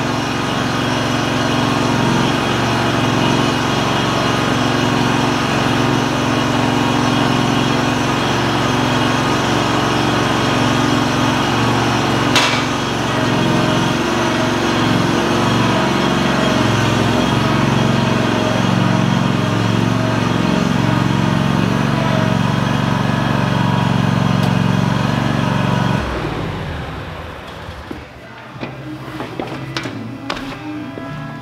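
Ferris zero-turn mower's engine running steadily while the mower is driven a short way, then switched off about four seconds before the end. A single sharp click comes about twelve seconds in.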